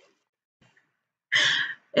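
A woman's short breathy sigh, a puff of air left over from laughing, about a second and a half in.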